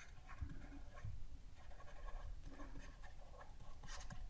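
Faint scratching and tapping of a stylus on a graphics tablet as a word is handwritten, in short irregular strokes.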